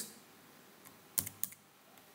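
A few computer keyboard keystrokes in quick succession, a little over a second in, against near quiet.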